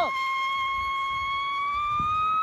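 A whistle rocket firework burning on the ground without lifting off, giving one continuous high whistle that holds steady and then rises slightly in pitch in the second half.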